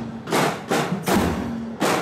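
Marching band snare drums beating a parade rhythm: sharp, regularly spaced stick strokes.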